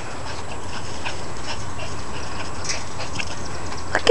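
A chocolate schipperke panting close by, in short irregular breaths over a steady background hiss.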